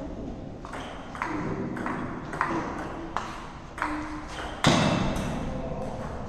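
A table tennis rally: the plastic ball clicking sharply off bats and table in a quick series of hits, two to three a second, with a loud thud about four and a half seconds in as the point ends.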